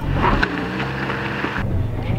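Small Fiat 500 car running, heard from inside the cabin: a steady low engine hum under a hiss of road and wind noise. About one and a half seconds in, the hiss drops away abruptly and the low hum carries on.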